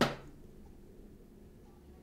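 A brief sharp sound right at the start that dies away quickly, then low, steady room tone.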